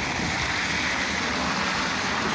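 Steady city traffic noise: a continuous hiss of car tyres on a wet road.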